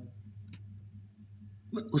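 A steady high-pitched buzz with a faint low hum beneath it, and one faint click about a quarter of the way in.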